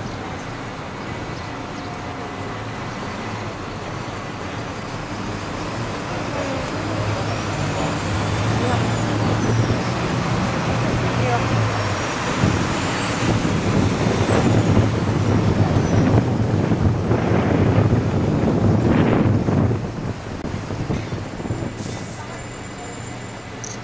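City road traffic and a bus engine running, heard from on board a moving tour bus, growing louder through the middle and dropping off a couple of seconds before the end.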